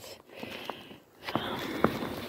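Soft footsteps on a thin layer of fresh snow, a few short crunches or clicks about half a second apart, with a light rustle.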